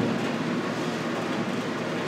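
Steady whirring hum of a window air conditioner running, with no change through the moment.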